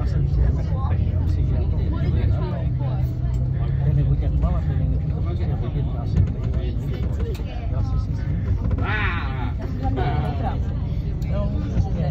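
Steady low rumble of road traffic, with a person talking over it throughout.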